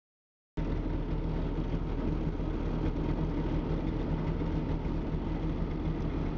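DKW 3=6's three-cylinder two-stroke engine running steadily at idle, heard from inside the cabin; the sound starts about half a second in.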